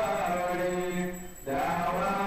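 A man chanting a devotional Hindu hymn into a microphone, holding long steady notes, with a brief break for breath about a second and a half in before the chant resumes.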